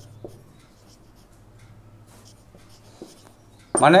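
Marker pen writing on a whiteboard: faint scratchy strokes with a few light clicks of the pen tip against the board.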